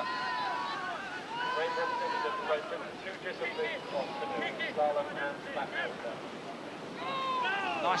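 Spectators shouting encouragement to a slalom kayaker over the steady rush of whitewater, with a short laugh near the end.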